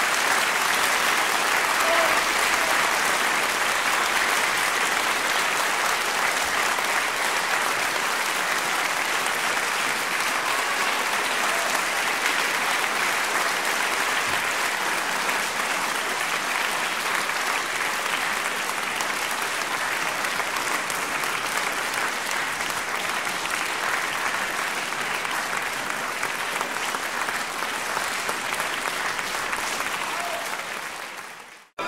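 Sustained audience applause, a dense, steady clapping that eases slightly toward the end.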